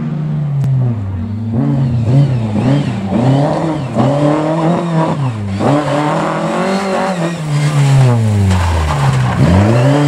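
Lada 2101 rally car's engine revving hard through a tight section: the pitch climbs and drops repeatedly with each burst of throttle and lift, falling deeply a little after nine seconds before rising again.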